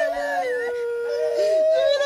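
Several voices in long, overlapping, drawn-out wailing tones that hold and slide slowly in pitch, with another voice joining near the end.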